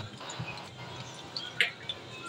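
Whole dried red chillies sizzling in hot oil, the start of a tempering (baghar); the sizzle is louder in the first moments and then settles, with one sharp click about a second and a half in.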